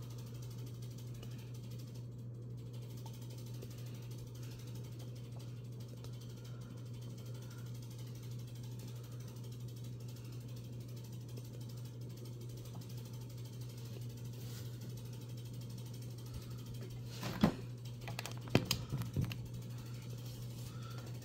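A steady low hum, then near the end a few light knocks and taps as a vinyl Funko Pop bobblehead figure is set down on a tabletop.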